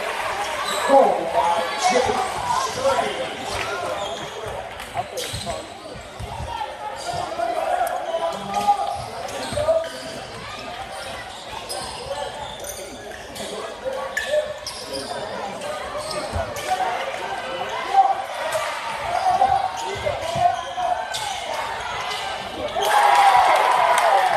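A basketball bouncing on a hardwood gym floor, with short knocks of the ball and players' feet, over a steady hubbub of spectators' voices. The crowd grows louder near the end.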